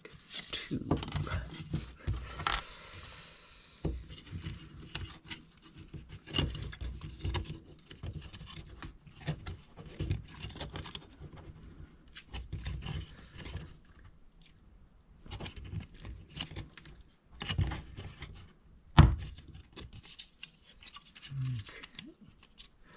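Laser-cut plywood parts of a ROKR Time Engine calendar kit being handled as number tiles are fitted onto a gear disc: irregular light clicks, taps and rubs of thin wood against wood, with one sharp click about three seconds before the end.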